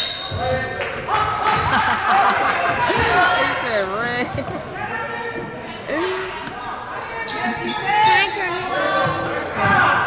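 Basketball dribbling and bouncing on a hardwood gym floor, with sharp sneaker squeaks and spectator chatter echoing in the large gym.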